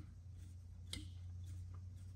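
A single soft click about a second in, as a bottle of chili sauce is emptied into a stainless steel bowl, over a faint steady room hum.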